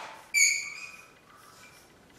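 Chalk squeaking against a blackboard as a word is written: one short, high, steady squeal about a third of a second in, fading away over about half a second.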